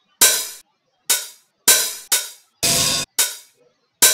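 Open hi-hat samples from LMMS's default drum library previewed one after another: six short, bright hits, each dying away within about half a second. The fifth is held steady and then cut off abruptly.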